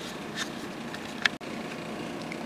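Steady background hiss, with a couple of faint ticks. About one and a half seconds in, the sound drops out for an instant where the recording is spliced.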